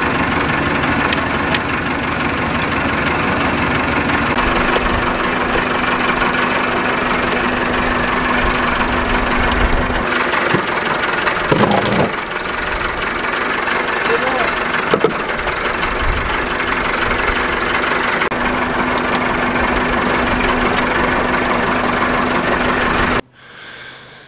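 Massey Ferguson tractor's diesel engine running steadily, with a low hum that fades in and out.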